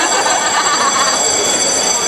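Loud, steady stadium din during a Muay Thai bout, with a wavering sound near the start and a constant high-pitched ringing tone running under it.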